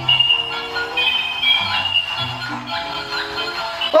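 Electronic music tune with a simple melody of held notes over a bass line, played by a battery-powered dolphin bubble gun toy while its trigger is held down; its owner later calls the noise annoying.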